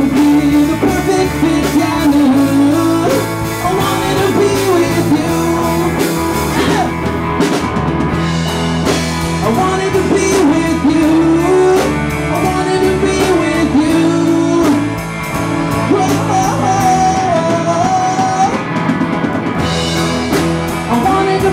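A live rock band playing continuously, with drums, bass and guitar and a two-manual electric organ prominent.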